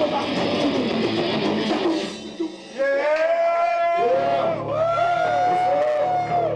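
Live heavy metal band with distorted electric guitars and drums playing loudly; a little over two seconds in the full band drops out and sustained electric guitar notes ring on, bent up and down in pitch, as the song winds down.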